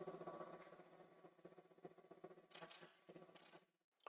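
Near silence: a wood lathe running faintly with a steady low hum and a few faint ticks, cutting off abruptly just before the end.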